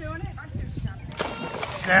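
A small child jumping into a swimming pool: a splash about a second in that lasts about half a second, after some faint talk.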